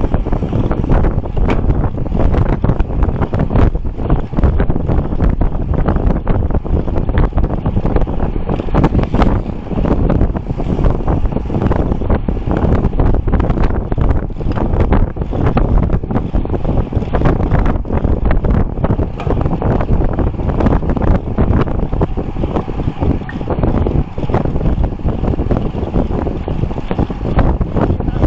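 Loud wind buffeting the microphone of a bicycle-mounted camera at a road-riding speed of about 35 km/h, gusting unevenly throughout.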